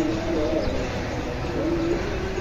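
Pigeons cooing, several overlapping, over a steady low outdoor rumble.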